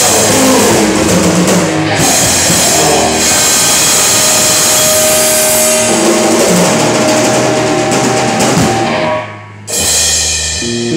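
Rock band playing live: drum kit with cymbals, electric bass and electric guitar, with a long held note through the second half. The band cuts out suddenly for about half a second just before the end, then comes back in.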